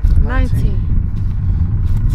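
Wind rumbling on the microphone, with one short vocal sound, rising then falling in pitch, about half a second in, a voice keeping time with the leg-raise reps.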